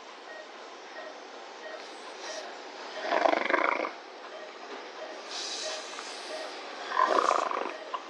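Surgical suction tube slurping in three short noisy bursts, about three, five and a half and seven seconds in.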